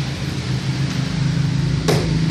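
Steady low machine hum, with one sharp knock near the end.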